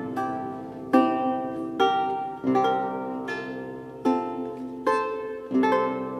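Solo baroque lute playing slow plucked chords, each one ringing out and fading before the next is struck, about one every second.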